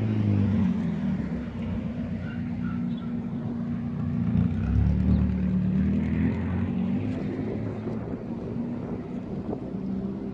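Low, steady hum of a motor vehicle engine running, growing louder about halfway through.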